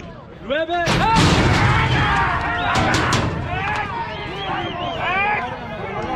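Metal starting-gate doors bang open about a second in as the racehorses break, followed by a couple of seconds of loud clatter and thudding. Men shout and whoop throughout.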